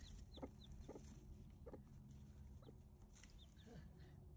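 Faint, soft sounds from a broody hen and her newly hatched chick: a handful of short, high, falling peeps from the chick and a few low, soft clucks from the hen.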